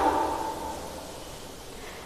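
A pause in a woman's speech: her voice fades out within the first half-second, leaving only faint, steady room hiss.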